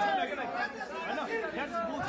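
Indistinct chatter of several voices in a large hall, lower than the amplified speech around it.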